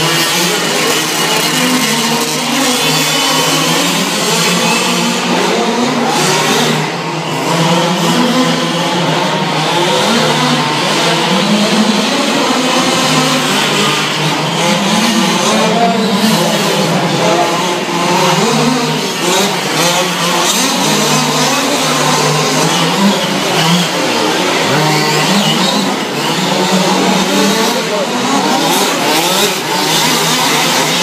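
Several 1/5-scale radio-controlled short-course trucks racing, their two-stroke petrol Zenoah engines constantly revving up and down over one another, heard in a large indoor hall.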